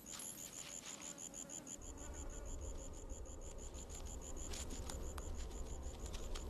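An insect chirping in an even, high-pitched pulse of about seven chirps a second, with a low rumble coming in about two seconds in.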